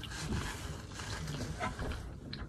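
Close-miked chewing and wet mouth sounds of someone eating.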